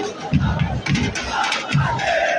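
A large crowd of football supporters chanting and shouting together, with a regular low thump about twice a second under the voices.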